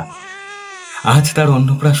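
An infant's single drawn-out cry, rising then falling in pitch, about a second long. A voice speaking over it follows.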